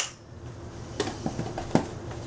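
Metal spoon clinking against a stainless steel mixing bowl as mayonnaise is spooned onto shredded cheese: one sharp clink at the start, then a few lighter clinks about a second in, over a low steady hum.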